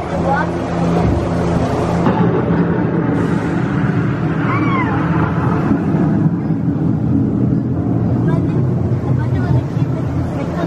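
Steady low hum of the ride boat and its surroundings, with indistinct voices under it and one short rising-and-falling cry about five seconds in.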